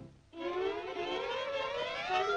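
Cartoon sound effect: after a brief silence, one siren-like tone starts about a third of a second in and slowly rises in pitch.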